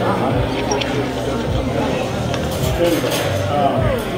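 Background voices of a restaurant dining room, with a knife and fork clinking against a plate while steak is cut.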